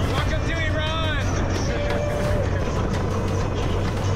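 A motorised tuk-tuk running with a steady low hum as it drives, under music and a voice calling out with a wavering pitch in the first second.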